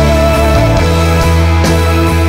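Live worship band music with sustained chords; the bass moves to a new chord just under a second in.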